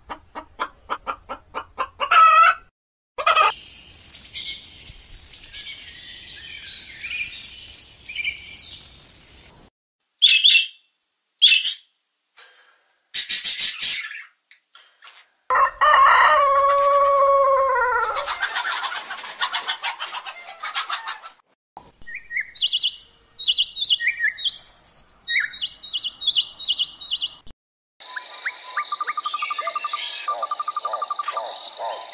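Hens clucking in short repeated notes, then a rooster crowing once, a long crow starting about halfway through. After it comes a run of short, high bird chirps, and near the end a steady high trill begins.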